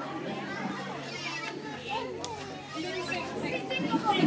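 Indistinct chatter of adults and young children, several voices overlapping, with a steady low hum underneath.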